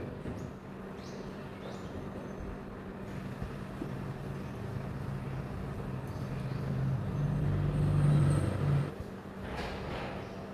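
Quiet, low-pitched background drone with a few held low notes that swell to their loudest about seven to nine seconds in, then drop away.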